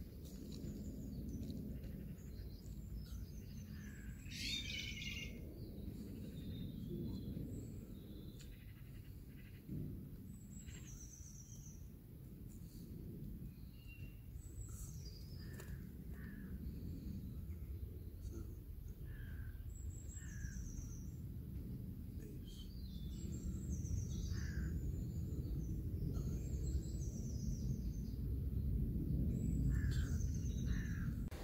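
Garden birds chirping and singing in short scattered phrases, over a steady low outdoor rumble.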